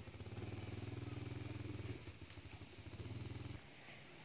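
Dog growling low in two long rumbles with a short break between them, stopping abruptly near the end: a warning growl at being teased.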